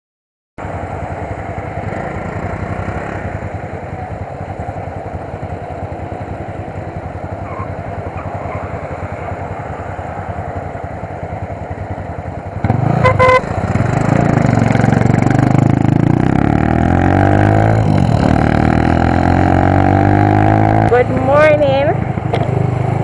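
Motorcycle on the move, heard from the rider's microphone: steady wind and road noise, then from about halfway a louder engine whose note rises and falls. There are a few short beeps soon after it gets louder.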